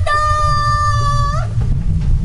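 A crowing call in imitation of a rooster: already risen to its peak, it holds one steady, clear pitch for about a second and a half, then breaks off. A steady low rumble runs underneath.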